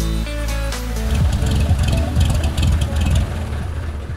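Music, joined about a second in by the uneven low running of a small propeller plane's engine, which fades out near the end.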